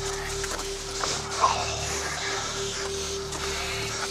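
Background score: a single sustained note held steady over a quiet low drone.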